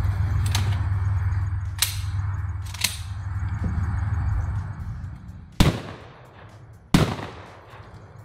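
Two shotgun shots about a second and a half apart near the end, each a sharp blast with a short ringing tail, after a steady low hum that fades out just before them.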